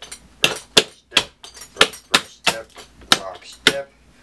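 Clogging shoes' metal taps striking a plywood floor in a steady rhythm, about three sharp taps a second: a right-foot triple step of double steps ending in a rock step.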